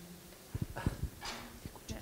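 Handling noise from a handheld microphone: a few low bumps and knocks with a short rustle as it is picked up, before anyone speaks into it, with faint voices in the room.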